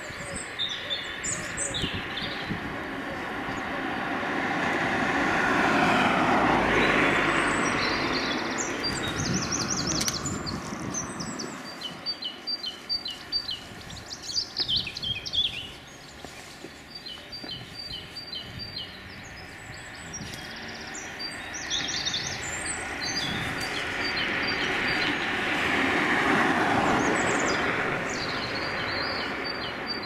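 Small birds chirping and calling in the trees, many short high calls throughout. Under them a rushing noise of passing traffic swells and fades twice, peaking about six seconds in and again near the end.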